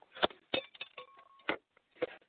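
Several sharp clicks and a brief beep heard over a telephone line, typical of a call-in line connecting.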